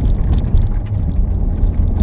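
Cabin noise of a 2017 Corvette Stingray Z51 on the road: a steady low rumble from its 6.2-litre V8 and tyre road noise, loud inside the car, not the quietest car on the road.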